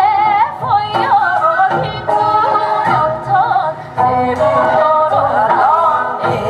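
Women singing a Korean folk song (gugak) through the stage PA, with wide, wavering vibrato, over accompaniment with a steady beat.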